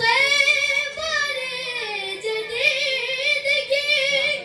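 A boy singing a manqabat, a devotional praise poem, solo into a microphone, holding long melodic notes that waver and slide in pitch.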